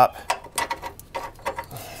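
Light, irregular metal clicks and scrapes as a bolt is worked through the upper mount of a Bilstein 5100 rear shock.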